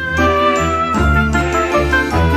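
Instrumental ident jingle for a segment break: a melody over bass notes that change about every half second.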